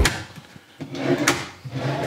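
Metal drawer runners on a kitchen cabinet being slid shut by hand: a short sliding run ending in a sharp click a little past a second in, with another click near the end.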